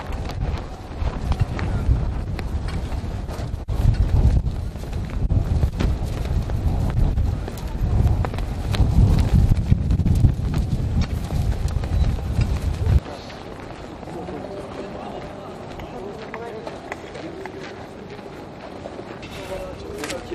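Outdoor street ambience with background voices and a heavy, fluctuating low rumble that cuts off suddenly about thirteen seconds in, leaving a quieter stretch with faint voices.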